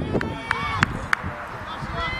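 Distant shouts and calls from players and people at a youth football match, over a low wind rumble, with four sharp knocks in the first second or so as the ball is kicked about in a scramble.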